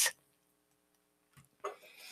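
Near silence after a woman's cueing voice stops, broken by a brief faint sound shortly before the end.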